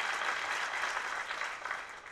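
Audience applauding in a hall, the clapping dying away near the end.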